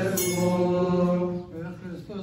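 A man's voice chanting in Coptic liturgical style, holding one long steady note that breaks off about one and a half seconds in.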